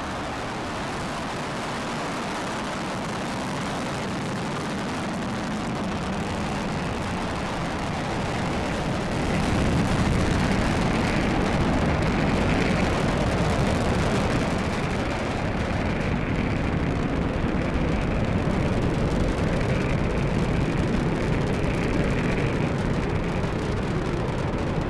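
Falcon 9 rocket's nine Merlin 1D first-stage engines during ascent: a steady, noisy rumble that grows louder about eight to ten seconds in and then holds.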